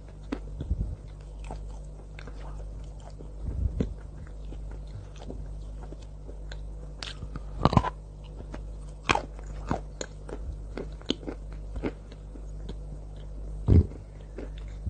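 Biting and chewing a chunk of white chalk coated in cocoa sauce, close to the microphone: scattered sharp, crunchy clicks, with the loudest bites about eight and nine seconds in and just before the end.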